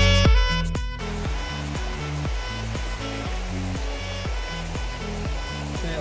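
Background music, loud for the first second and then dropping lower, over the steady rush of a shallow river flowing over stones.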